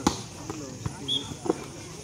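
Volleyball struck hard at the net: a sharp slap right at the start, then three softer knocks of the ball over about a second and a half, with crowd voices throughout.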